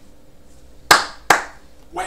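Two sharp hand claps about half a second apart, near the middle.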